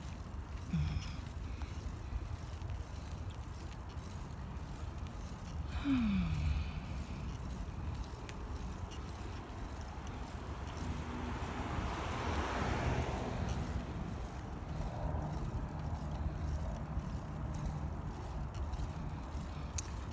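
Steady wind and rolling rumble on the microphone while riding a bicycle along a paved path. A short falling tone comes about six seconds in, and a passing car swells and fades around twelve to thirteen seconds.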